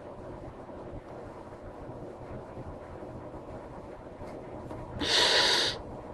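Low, steady room noise, then about five seconds in one short, loud breath blown out close to the microphone.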